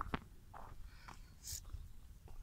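Faint footsteps on a dirt path, a few soft steps about half a second apart, over a low rumble.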